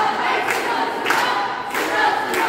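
A group of young performers singing in chorus, with a sharp beat, likely hand claps, coming regularly a little under twice a second.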